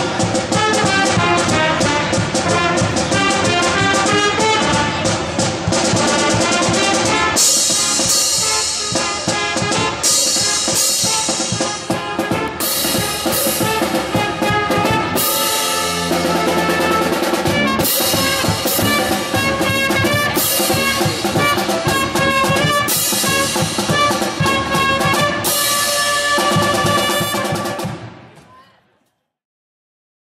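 A school pep band playing an upbeat tune: trumpets and sousaphone over snare and bass drums. From about a quarter of the way in, hand cymbals crash every couple of seconds.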